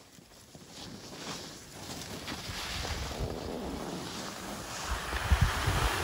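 Wind buffeting a phone's microphone while skiing downhill, over the hiss of skis sliding on snow. It builds from about two seconds in, with heavier low gusts near the end.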